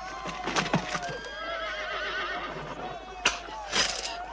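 Horses whinnying, several wavering calls overlapping, with a few sharp knocks.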